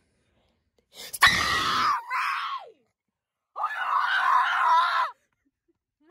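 Young person screaming in two bursts: the first, about a second in, loud enough to distort and trailing off into a falling wail; the second, steadier, about three and a half seconds in.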